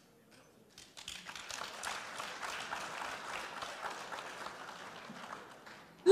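Audience applauding faintly, the clapping starting about a second in and dying away just before the end.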